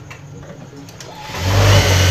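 Industrial sewing machine running at speed as cloth is stitched, with a strong low motor hum; it starts about one and a half seconds in.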